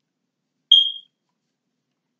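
A single short, high electronic beep that fades out within about a third of a second.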